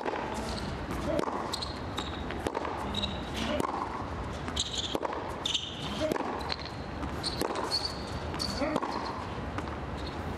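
Tennis rally on a hard court: racket strings striking the ball back and forth, a sharp hit about every second, with short high squeaks between the hits.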